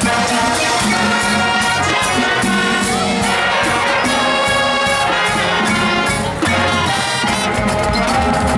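Marching band playing: trumpets and other brass over a marching drumline of snare and bass drums keeping a steady beat. A heavy low bass part comes in about six seconds in.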